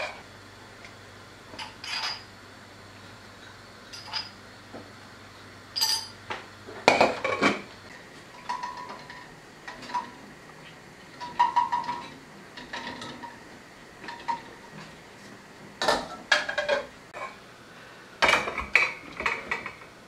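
Enamel pot lids and a metal spoon clanking and clinking against enamel pots, in scattered knocks with a few short rings.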